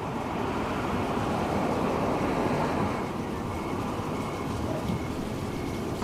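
Steady rushing outdoor ambient noise with no speech, swelling a little in the middle.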